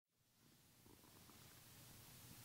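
Near silence: faint room tone with a low hum, fading in at the very start.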